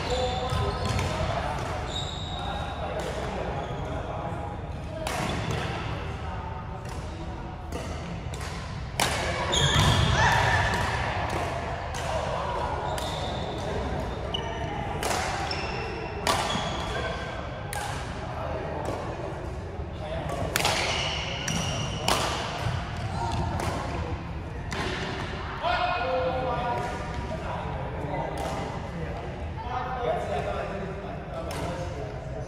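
Doubles badminton rally: sharp racket strikes on the shuttlecock at irregular intervals, with sneakers squeaking on the court floor, echoing in a large hall.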